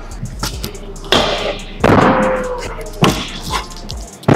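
A pro scooter landing and rolling on skatepark ramps and boxes: several sharp clacks and thuds of the deck and wheels striking the surface, with wheel-rolling noise between them.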